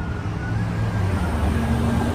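Road traffic passing on the street: a steady low motor-vehicle rumble.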